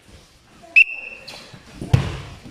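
A single short, sharp blast on a sports whistle, one steady high note lasting about half a second, about a second in. A dull thud follows near the end.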